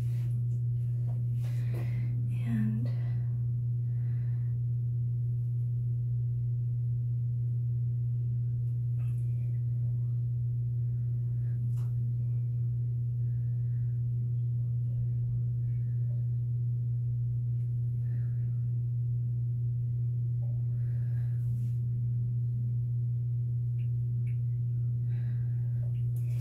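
A steady low hum holding one pitch, with only faint brief sounds over it.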